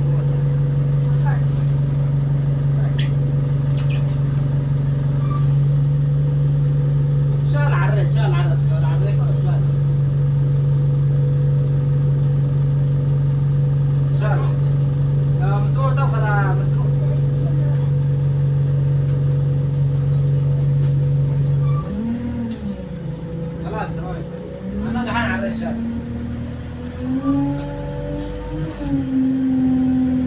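Bus diesel engine idling with a steady low drone while the bus stands still. About two-thirds of the way through, the idle drone stops and the engine note rises and falls as the bus pulls away.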